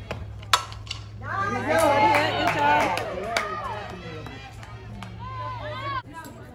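A softball bat hits a pitched ball once about half a second in, a sharp crack, followed by spectators cheering and shouting for a couple of seconds.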